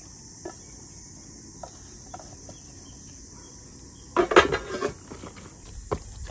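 Kimchi being tipped from a stainless steel bowl into a plastic storage container: light taps and scrapes, then a louder burst of clatter and rustling about four seconds in. A steady high insect chirring runs underneath.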